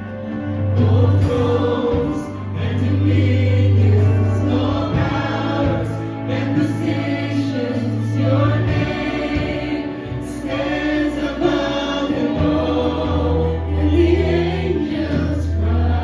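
Live amplified worship music: a group of singers on microphones singing together over electric guitar, with long-held deep bass notes that drop out for a few seconds in the middle and come back.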